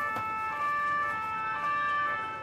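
Two-tone police siren, its pitch switching back and forth between a high and a low note about every half second.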